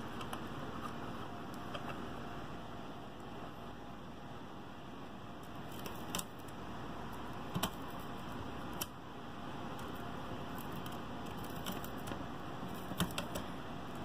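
Faint steady background noise with a few scattered light clicks and taps, one around six seconds in, a pair near the middle and a few more near the end, from small tools and hands working at the amplifier.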